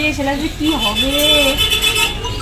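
A girl's voice drawn out in a sing-song, repeated 'yeah, yeah', gliding up and down in pitch, over a steady low rumble of traffic. A steady high-pitched tone sounds from a little before the middle to the end.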